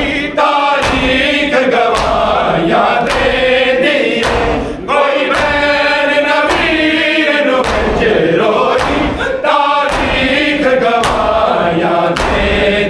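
A crowd of men chanting a Shia nauha (lament) in unison. It is punctuated by regular sharp slaps of hands striking bare chests in matam, roughly once a second.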